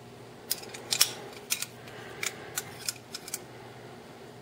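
Sharp metallic clicks and clinks, about a dozen at irregular intervals, the loudest about a second in: the parts of a Quartermaster McFly II balisong knocking together as its blade is pressed out of the handles and a blunt training blade is fitted in its place.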